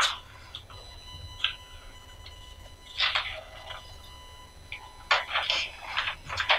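Sheets of paper rustling as they are handled and turned, in a few short bursts, over a low steady hum.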